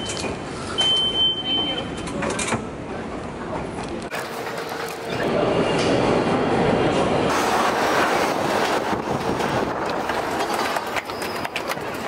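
Subway station noise with background voices: a turnstile card reader gives one high beep about a second long about a second in, and a train is heard running in the middle of the stretch.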